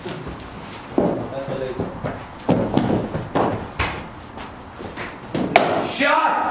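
Footsteps and light knocks in a netted indoor hall, then a single sharp crack near the end as a cricket ball is flung from a sidearm ball-thrower. Voices murmur in the background.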